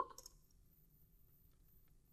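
Near silence: faint room tone with a low hum, just after the speech stops.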